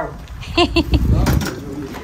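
Short snatches of people's voices over a steady low rumble, with a few sharp clicks a little over a second in.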